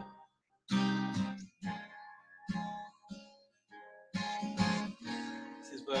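Acoustic guitar, capoed at the first fret and played in G shapes so that it sounds in A flat, strummed slowly. After a short gap near the start, chords are struck about once a second, each ringing and fading.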